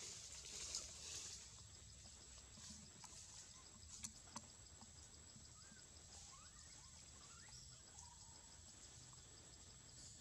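Near silence: faint outdoor ambience with a steady, high-pitched insect drone and an even pulsing beneath it. Two soft clicks come about four seconds in, and a few faint, short rising chirps follow later.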